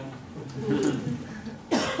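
A single short, sharp cough near the end, after a little quiet talk.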